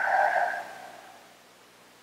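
A child breathing out slowly through rounded lips in a deliberate exhale, a soft airy breath that fades away within about a second.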